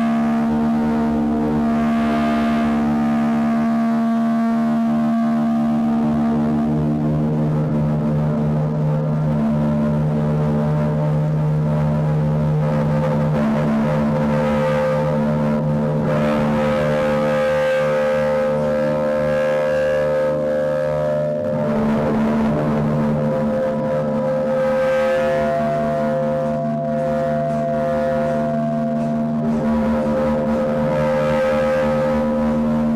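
Amplified electric guitar hanging from a wire and played with a bow, giving layered, droning held tones. The held notes shift in pitch about seven seconds in and again about twenty-one seconds in.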